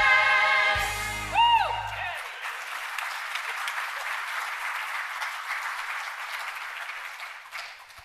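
Choir and band holding the final chord of a worship song, which cuts off about two seconds in. The congregation then applauds, and the applause dies away near the end.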